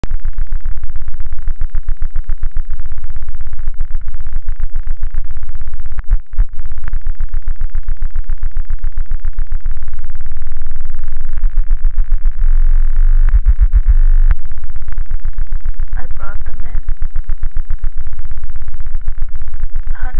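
Loud, harsh electronic noise music: a dense, stuttering wall of sound, heaviest in the bass. It drops out briefly about six seconds in and surges deeper around thirteen to fourteen seconds. A short fragment of processed voice breaks through about sixteen seconds in.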